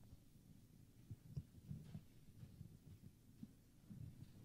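Near silence: faint low room rumble with a few soft, irregular thumps.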